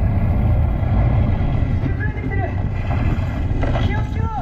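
Loud, steady low rumble of a theme-park dark ride in motion, with brief high voice calls about two seconds in and again near the end.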